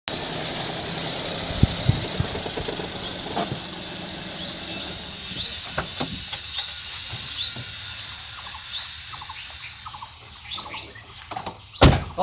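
Outdoor ambience: a steady hiss that fades after about five seconds, a few light knocks, and faint short high chirps, with a sharp knock just before the end.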